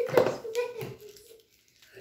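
A young child's voice holding a sustained sound. A sharp tap comes just after the start, and the voice fades out about a second in, leaving a brief hush.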